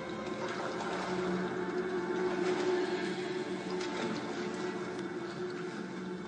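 Film soundtrack ambience for a hell scene, played back over a room's speakers: a steady, layered drone of several held tones over a hissing wash.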